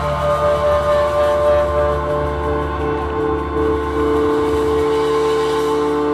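Live band holding a long sustained chord: several steady held notes over a low bass drone, with cymbal wash.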